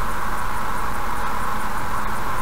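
Steady road and wind noise of a car cruising at about 75 km/h, heard from inside the cabin: an even, unchanging hiss.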